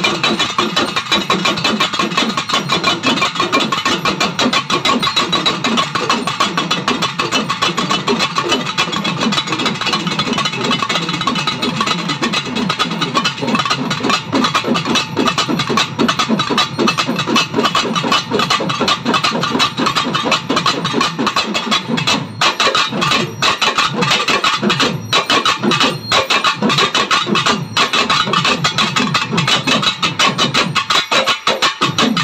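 An ensemble of Tamil pambai drums: four players beat the strapped pairs of cylindrical pambai drums with sticks in a fast, unbroken rhythm. A few brief gaps in the strokes come in the second half.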